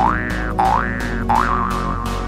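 Cartoon 'boing' sound effects: three springy rising tones about two-thirds of a second apart, over background music with a steady beat.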